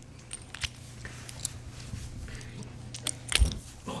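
Light metal clicks and clinks from a leash clip being fumbled onto a dog's collar ring. A dull thump about three and a half seconds in.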